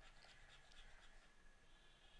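Near silence with faint scratching of a stylus on a drawing tablet as an area is shaded in with quick strokes.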